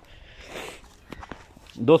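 Soft footsteps and rustling on dry, chaff-strewn ground: a brief rustle, then a few light crunches. A man starts speaking near the end.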